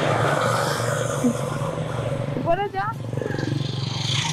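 A motor vehicle's engine running steadily, a constant low hum with road noise over it.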